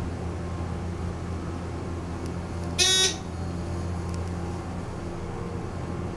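ThyssenKrupp holeless hydraulic elevator travelling up, its pump motor and ride giving a steady low hum. About three seconds in, a single short electronic beep sounds from the car's signal fixtures.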